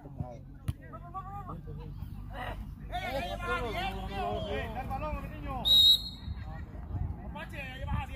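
Distant voices of players and onlookers calling out, then one short, loud, high referee's whistle blast a little before six seconds in, stopping play.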